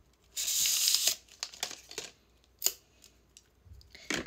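A packaging wrapper torn open in one long rip, followed by a few short crinkles and clicks as it is handled, while a bento meal is being unwrapped.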